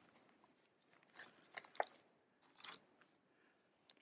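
Faint crinkling of plastic comic-book bags as a bagged comic is slid off the stack, a few short crinkles between about one and three seconds in.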